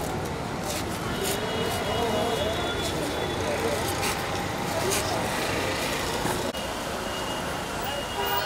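Steady outdoor traffic noise under the murmur of a crowd talking, with a few short sharp clicks in the first half. There is a brief break about six and a half seconds in.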